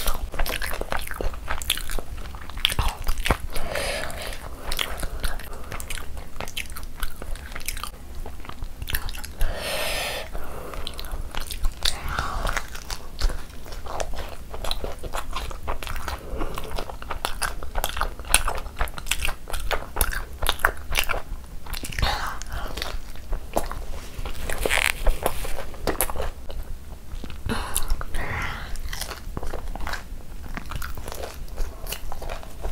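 Close-miked ASMR eating: chewing and biting mouthfuls of chicken biryani and curry-coated chicken eaten by hand, with many short mouth clicks throughout.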